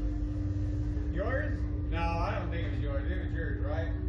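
Voices talking in short bursts over a steady low hum and rumble.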